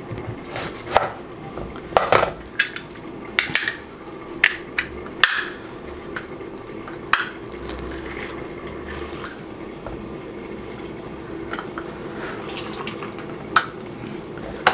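Sharp clicks and knocks of a knife and utensils against a wooden cutting board and a stainless steel bowl as lemons are cut and added to chopped onion, chili and cilantro. The clicks are busy for the first seven seconds or so and then sparse, over a steady low hum.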